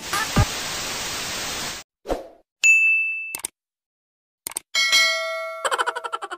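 Intro sound effects: a falling bass hit, then about two seconds of TV-static hiss, a short whoosh and a single high ding. Near the end a couple of mouse clicks and a multi-tone chime that breaks into a quick fluttering ring, as for a subscribe button and notification bell.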